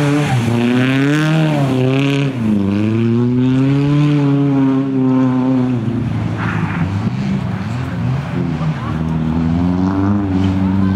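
Nissan Sunny rally car's engine revving hard as the car slides through a corner and accelerates away. The revs drop sharply about two seconds in and again near six seconds, then climb again toward the end.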